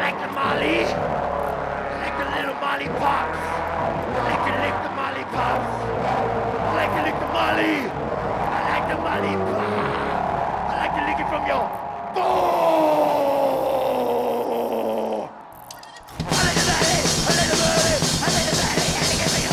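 Live band music: pitched voice and horn lines over a low backing for about twelve seconds, then a long falling trombone-like glide. A short drop-out follows a little after fifteen seconds, and then the full rock band comes in loud.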